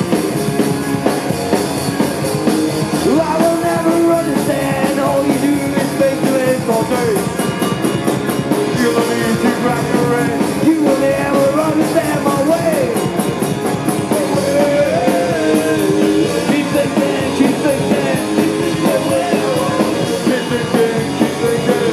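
Punk rock band playing live at full volume: distorted electric guitars and a drum kit, with a wavering melody line rising and falling over them from about three seconds in.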